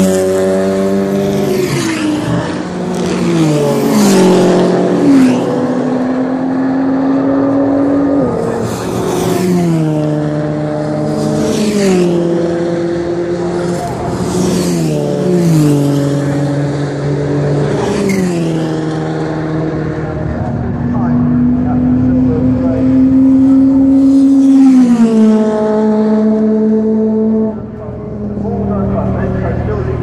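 Race cars passing at speed down the pit straight one after another, about ten pass-bys. Each engine note drops in pitch as the car goes by, then holds lower as it pulls away.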